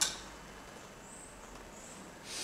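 Quiet indoor room tone, opening with a single short click.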